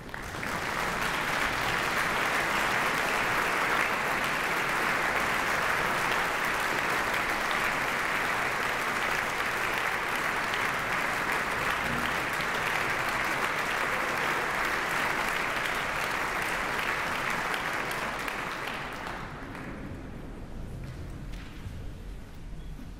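Large concert-hall audience applauding: a steady wash of clapping that starts at once and fades away in the last few seconds.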